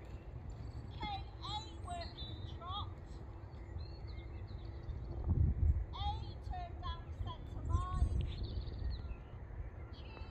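Birds chirping and singing in short rising and falling calls, over a low steady rumble that swells twice, about five and a half and eight seconds in.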